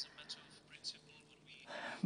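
Faint breath and mouth sounds in a pause between a speaker's sentences, with a soft breath in near the end just before talking resumes.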